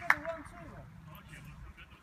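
Sounds of a futsal game: one sharp knock just after the start, followed by faint, indistinct voices of players.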